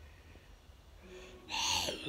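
Quiet room background, then about a second and a half in a child's voice makes a short wordless vocal sound.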